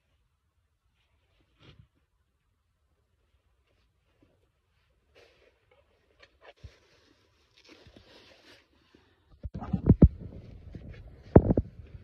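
Near silence, then faint rustling, then loud low rumbling and a few knocks near the end as the phone is picked up and handled against the microphone.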